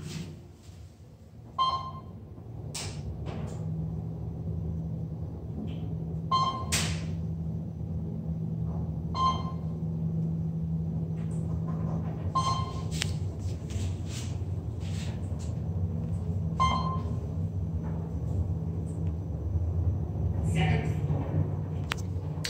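Kone elevator car travelling upward: a steady low hum of the car in motion sets in about two seconds in. Over it come short single beeps every three to four seconds as the car passes floors, plus a few sharp clicks.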